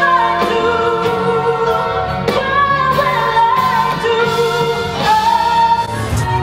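A woman singing a slow ballad melody in long held notes into a microphone, live with a band of keyboard and electric bass behind her.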